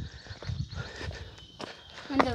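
Footsteps on stony ground: a few soft, uneven steps.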